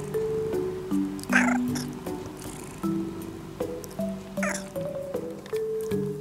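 A domestic cat meowing twice, about three seconds apart, over light background music.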